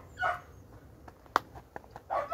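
A brief animal call near the start, then a single sharp click a little past halfway, the loudest sound, among a few lighter ticks.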